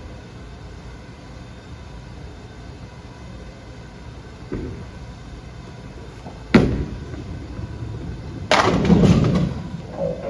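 Storm Absolute bowling ball thrown: it lands on the lane with a sharp thud about six and a half seconds in, rolls for about two seconds, then crashes into the pins in a loud clatter lasting about a second. A duller thump comes earlier, over the steady hum of the bowling alley.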